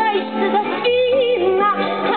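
A woman singing live to her own acoustic guitar, her voice sliding and bending between notes about halfway through, over the guitar's ringing chords.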